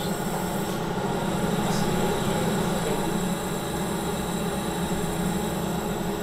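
Steady hum and hiss of running lab equipment, holding an even level with no sudden events.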